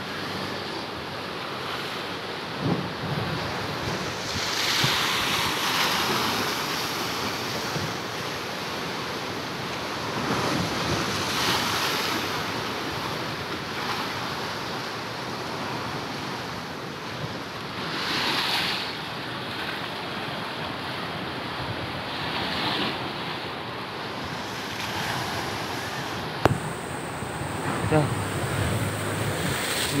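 Rough, irregular high-tide surf breaking against a seawall and rocky shore: a steady wash of water with louder crashes every five to seven seconds, and wind buffeting the microphone.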